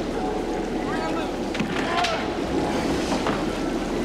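Steady churning, bubbling water in a hot tub, with short vocal groans over it.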